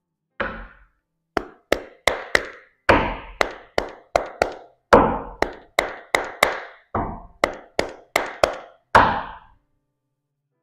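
A deck of tarot cards being shuffled by hand: a string of about twenty sharp slaps and taps, two or three a second, each dying away quickly.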